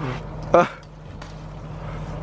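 A brief spoken "huh" about half a second in, over a steady low mechanical hum.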